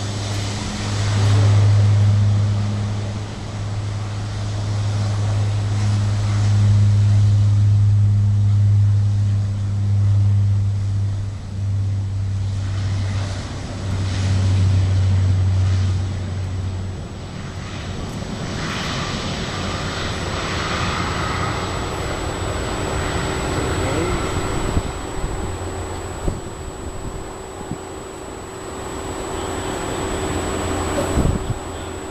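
Lockheed Martin KC-130J Hercules turboprops with six-bladed propellers at takeoff power, a loud, deep, steady drone that swells and eases as the aircraft rolls down the runway. After about 17 s the deep drone drops away, leaving a quieter, broader rushing sound as the aircraft climbs away.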